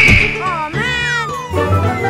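Meow-like cartoon sound effects, a few short calls that rise and fall in pitch, followed by children's background music that comes in about one and a half seconds in.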